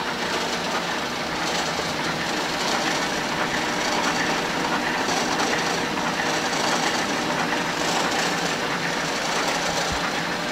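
Refurbished dough sheeter running: its motor, rollers and conveyor belt making a steady, continuous mechanical running sound.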